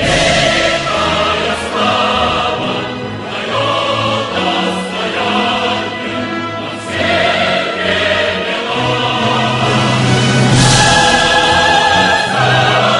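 Choir singing sustained chords with orchestral accompaniment, swelling fuller near the end.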